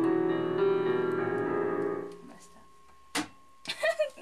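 Digital piano playing sustained chords that ring out and die away about two seconds in as the piece ends. A sharp click follows about a second later, then a brief breathy noise near the end.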